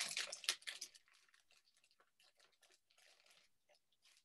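Rustling and short crackly clicks of a bag being rummaged through for small craft-kit pieces, busiest in about the first second and then faint.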